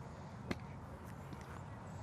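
A single sharp click about half a second in, a golf club striking a ball elsewhere on the driving range, with a few fainter ticks after it, over a steady low outdoor background.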